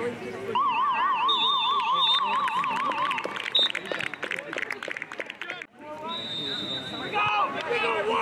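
Voices calling out across a soccer field during play. A high warbling tone rises and falls quickly, about four times a second, from about half a second in until about three seconds. The sound drops out abruptly for a moment at about five and a half seconds.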